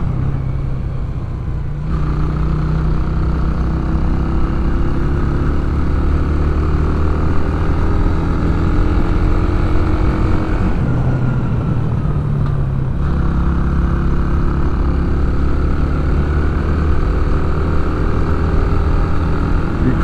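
Yamaha YB125SP's 125 cc single-cylinder four-stroke engine running under way, its note climbing steadily, dipping around the middle as the throttle is eased, then holding steady again.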